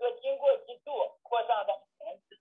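Speech only: a man talking over a narrow, telephone-like line.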